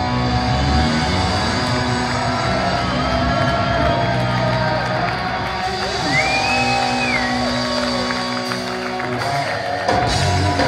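Hard rock band playing live: electric guitars, bass and drums in sustained, ringing chords. A high note slides up about six seconds in, is held, then drops away, and a sharp drum hit lands near the end.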